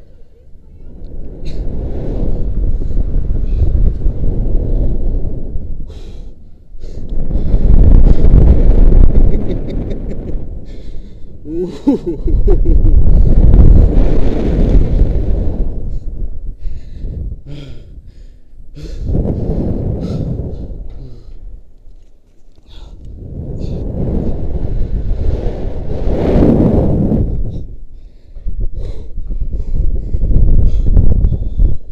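Wind buffeting a body-worn action camera's microphone in long swells that rise and fall every few seconds as a rope jumper swings back and forth on the rope, strongest near the start of the swing and weakening later.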